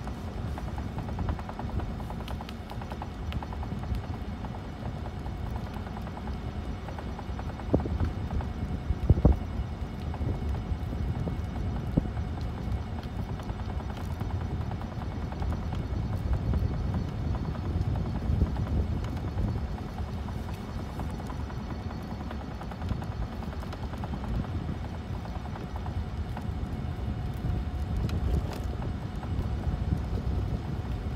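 Wind rumbling on the microphone outdoors, a low gusting buffet throughout, with a couple of sharp knocks about eight and nine seconds in.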